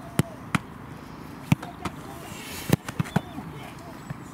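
A series of sharp thuds of footballs being struck and caught during goalkeeper drills, about seven at uneven intervals, the loudest a little before the end, with faint distant voices between them.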